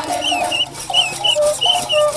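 A crowd of women singing and chanting in a procession, with short, shrill high notes repeating several times a second over the voices.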